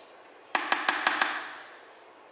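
Plastic spatula stirring creamy fruit salad in a plastic tub: about half a second in, a run of about five quick light taps and knocks of the spatula against the tub, fading within a second.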